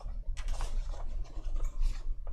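A long sheet of painting paper rustling and scraping across the table as it is unrolled by hand, starting about a third of a second in, over a steady low hum.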